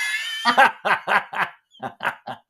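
People laughing: a breathy, high-pitched laugh that gives way to quick, short 'ha-ha' beats that die away near the end.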